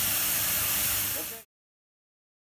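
A freshly inflated liferaft's overpressure relief valve venting surplus gas with a steady hiss, which cuts off suddenly about one and a half seconds in.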